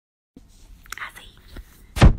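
Total silence for the first third of a second, then faint whispering and rustling close to a phone's microphone. A sudden loud bump comes at the very end, as the phone is handled.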